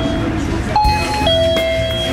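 Electronic entry chime at a shop door: a steady low tone, a higher tone from about 0.75 s in, then the low tone again, over shop chatter.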